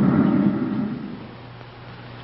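Rumbling rocket-engine sound effect of a spaceship in flight, fading down about a second in and leaving a low steady hum.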